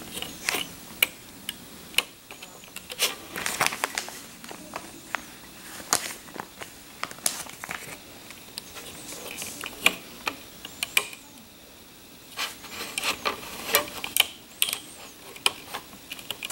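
Irregular sharp clicks and small snaps of rubber loom bands being pushed down and stretched over the plastic pegs of a Crazy Loom, with a brief quieter pause about eleven seconds in.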